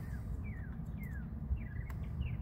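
A bird calling: short whistled notes that slide downward in pitch, about four in two seconds, over a steady low background rumble.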